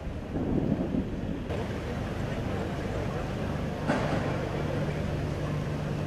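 Outdoor background noise with a vehicle engine's steady low hum in the second half and faint voices; the sound changes abruptly twice.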